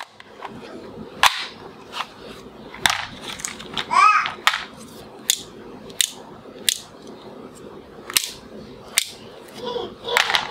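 Hard plastic toy guns on a blister-pack card being handled, giving sharp clicks about once a second. A brief pitched sound rises and falls about four seconds in.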